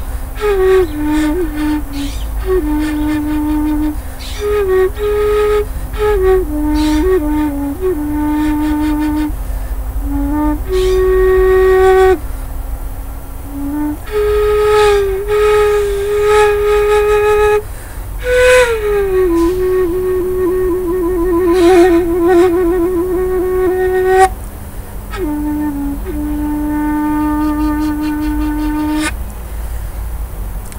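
End-blown bamboo flute in D playing a slow melody on the diatonic minor scale, also touching the pentatonic minor. Phrases are separated by short pauses, and a long held note about two-thirds of the way through carries vibrato.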